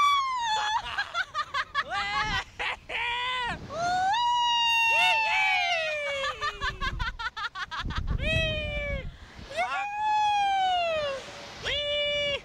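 Two riders on a reverse-bungee slingshot ride screaming and laughing: long, high shrieks, one of them drawn out over about three seconds and sliding down in pitch, with shorter whoops between. Gusts of wind buffet the microphone about eight seconds in.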